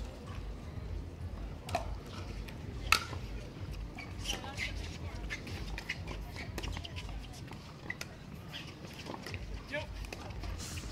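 Pickleball paddles striking the plastic ball during a rally: a couple of sharp pops early on, the loudest about three seconds in, then a run of quicker, quieter taps as the players dink at the net, over a low murmur from the crowd.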